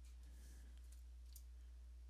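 Near silence: a steady low electrical hum, with a faint click a little past halfway.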